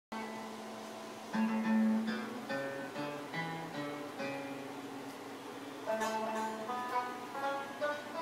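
Plucked string instruments, guitar and banjo, picking a melody note by note in short phrases. The playing grows louder a little over a second in and again about six seconds in.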